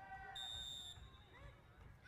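A single faint, steady whistle blast, about half a second long, a third of a second in: a referee's whistle stopping play for a pick call. Faint voices carry from the field underneath.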